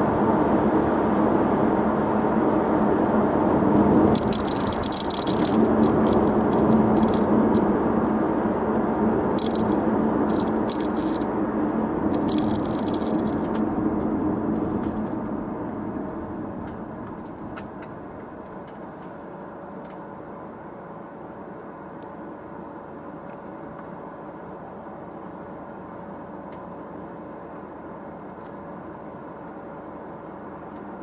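Interior noise of a 2005 Audi A4 driving: steady road and engine noise, with bursts of high rattling from about four to thirteen seconds in. The noise fades after about fifteen seconds as the car slows to a stop, leaving a quieter steady idle.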